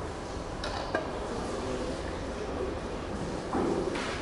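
A metal paddle stirring thick grain mash in a stainless steel brew pot, with scraping and a sharp clink against the pot about a second in, over steady background noise.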